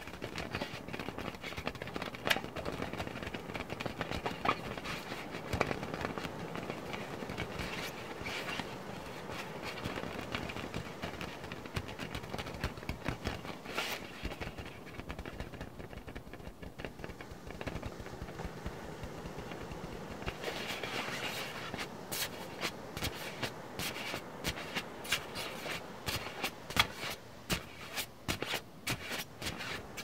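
Close rubbing and scratching against the microphone, a steady crackly scraping that turns into quick, sharp taps and clicks in the last third.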